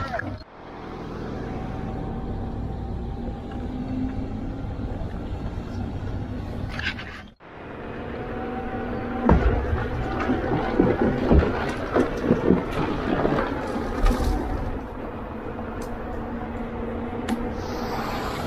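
Inmotion V10F electric unicycle being ridden, with wind on the helmet microphones and a faint steady motor whine. The sound drops out briefly about seven seconds in. In the second half the tyre rolls over a wooden boardwalk, with a run of knocks from the boards.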